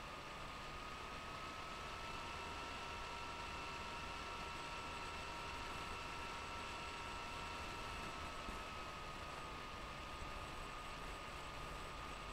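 Steady hiss of room tone and microphone noise, with faint thin whining tones held through it and no other events.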